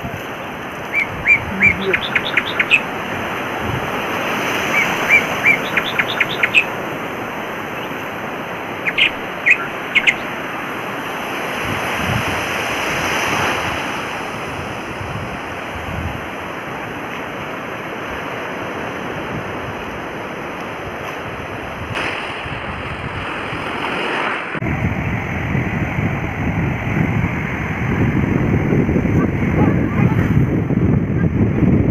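Sea surf washing and breaking in the shallows, a steady rush. In the first ten seconds come three quick runs of short, high chirps, and from about 25 s in, wind buffets the microphone with a low rumble.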